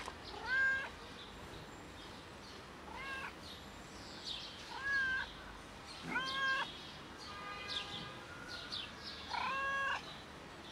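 Fluffy grey-and-white cat meowing over and over, five meows a second or two apart, the last one near the end drawn out longest.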